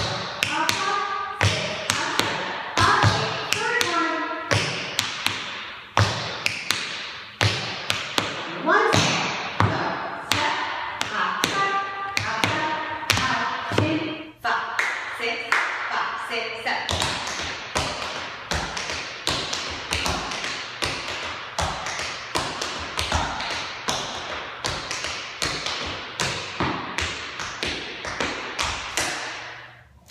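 Metal taps on tap shoes striking a hard studio floor in quick, dense rhythmic patterns: the Tack Annie step of the Shim Sham danced through in full.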